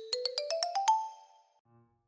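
A short eyecatch jingle used as a section-transition sound effect: a quick run of about eight bright plucked notes stepping upward in pitch over about a second.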